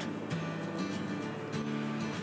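Soft background music with low held notes that change a few times.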